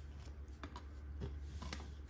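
A few faint light clicks and taps as a trading card is handled and set into a small clear plastic card stand on a tabletop, over a low steady hum.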